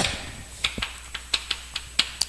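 Chalk writing on a blackboard: irregular sharp taps of the chalk against the board with light scratching between strokes, the loudest taps at the start and near the end.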